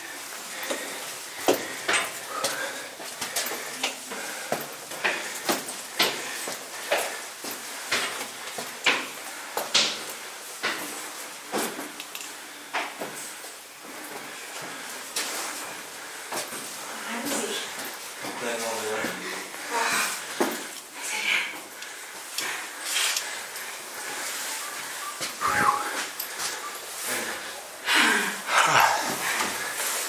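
Footsteps climbing steep stone steps: a steady series of knocks and scuffs, one or two a second.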